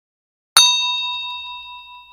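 A single bell ding sound effect for a clicked notification-bell icon: struck sharply about half a second in, then ringing with several clear tones that fade out over about two seconds.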